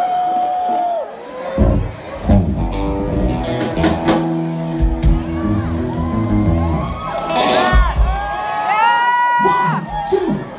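Live rock band on stage sounding amplified guitar and bass notes, with a few drum hits, as the lead-in to a song. Crowd whoops and cheers near the start and again toward the end.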